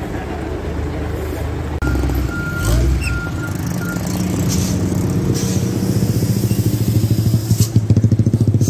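Fire truck engine running, its low pulsing beat growing louder toward the end. A short high beep sounds four times, about two to three and a half seconds in.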